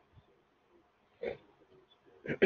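A quiet room with one brief, short vocal sound from a person a little over a second in, without words.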